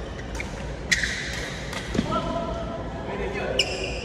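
Badminton rally: several sharp racket strikes on the shuttlecock, the loudest about a second in, and a short high squeak of court shoes near the end. A player's voice calls out briefly in the middle.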